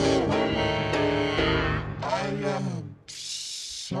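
A sung voice holding the song's final word over piano-led music, both ending about three seconds in. A brief burst of hiss follows.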